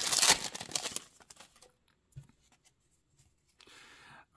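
Foil wrapper of a baseball card pack being torn open and crinkled by hand, loud for about the first second, then only a few faint rustles.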